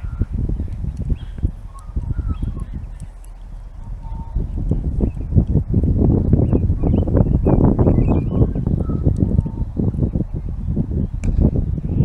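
Wind buffeting the microphone outdoors: an irregular low rumble that grows stronger about halfway through, with faint bird chirps behind it.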